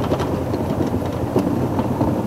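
Steady low rumble of an idling engine, with a few faint clicks.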